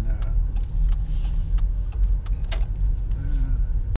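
Car cabin noise from a moving car: a steady low road and engine rumble, with a series of sharp clicks about twice a second.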